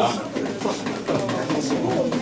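Low, indistinct voices in a small room, with no clear words.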